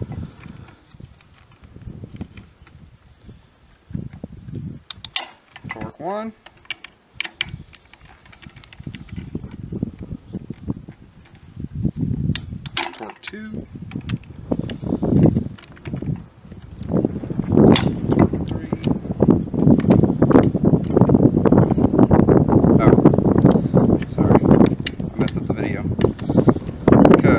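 Light metal clicks and scrapes of a hex key working the barrel clamp screws of a rifle chassis, under low voices. A louder, rough noise builds over the last several seconds.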